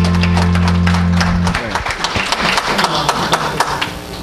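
The song's instrumental accompaniment holds its final chord, which cuts off about a second and a half in. A congregation applauds over the chord's end and on after it.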